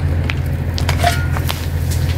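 Shovel working in stony dirt: a few light scrapes and clicks of stones, over a steady low rumble.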